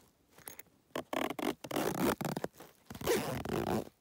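Zipper on a nylon backpack being pulled in several rasping strokes, starting about a second in and cutting off suddenly at the end.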